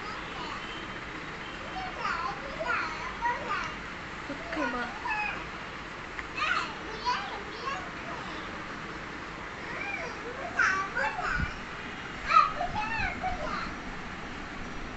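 A young child babbling in short high-pitched phrases without clear words, with pauses between, while playing with soft toys.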